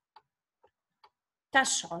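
Three faint, short clicks spaced about half a second apart, from a computer pointing device used to handwrite on an on-screen worksheet; a woman's voice starts near the end.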